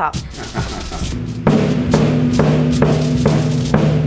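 Lightweight adapted bombo (large bass drum) struck with a mallet fixed to the player's arm. It plays a steady beat of about two strokes a second, beginning about a second in.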